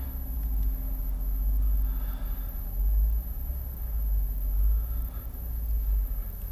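Low rumble of wind buffeting the microphone, rising and falling in strength.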